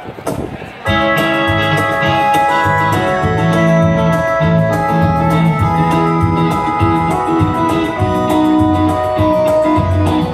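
A live rock band starts its instrumental intro about a second in: electric guitar, bass guitar and sustained keyboard chords over a steady percussion beat, played through the stage PA.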